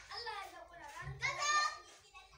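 A child's voice in the background, picked up by the phone's microphone, rising to a high-pitched call about a second in.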